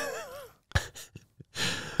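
A man's breathy laugh trailing off in a wavering pitch, followed by a few short puffs of breath and a quick intake of breath near the end.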